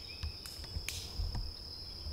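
Insects chirring outdoors: one steady, high-pitched tone that never breaks, with a few faint ticks over it.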